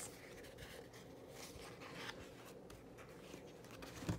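Faint rustling and light ticks of paper as the sheets of a sticker book are handled and turned.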